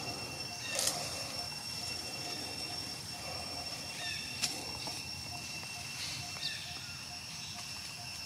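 Forest ambience dominated by a steady high-pitched insect drone, with a faint note repeating about twice a second. A few brief rustles or snaps, loudest about a second in and again past the middle, come from monkeys moving in the leafy branches.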